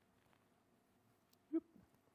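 Near silence: quiet room tone, broken by one short spoken "yep" near the end.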